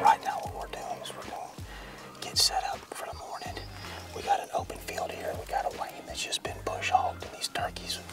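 A man whispering, with background music of sustained low bass notes underneath.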